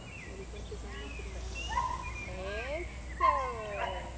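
A dog baying in several short calls, each sliding down in pitch, the loudest about three seconds in.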